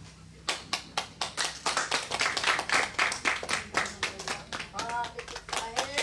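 Audience applauding. The clapping starts about half a second in and soon becomes dense, with a voice heard near the end.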